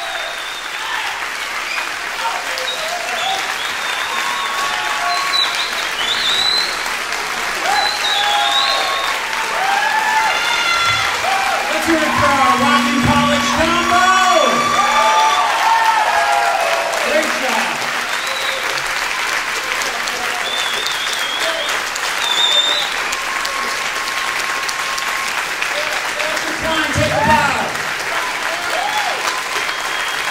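Concert audience applauding and cheering, with voices shouting over the dense clapping throughout.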